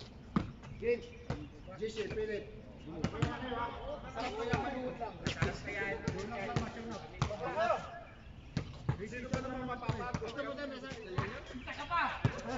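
Basketball bouncing on a hard outdoor court, a string of irregularly spaced thuds as it is dribbled and passed in play, with players calling out over it.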